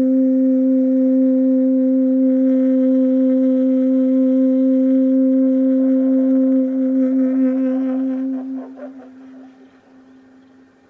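Saxophone holding one long, steady note for about seven seconds, then fading away over the next two as the note ends.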